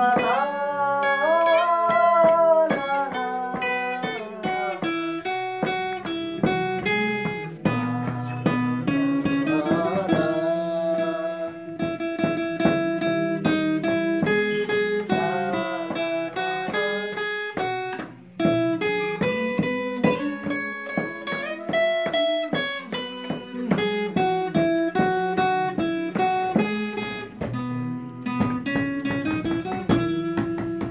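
Acoustic guitar playing an instrumental intro of plucked notes, with a few notes sliding in pitch near the start and a short break about 18 seconds in.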